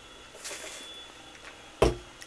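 A plastic fountain-drink cup set down on a bathroom counter: one short thump near the end, after a quiet stretch with a faint brief hiss.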